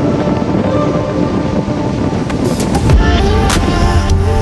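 Background music over the running noise of a motorboat at speed on choppy water, with wind on the microphone and spray slapping off the hull from about halfway through.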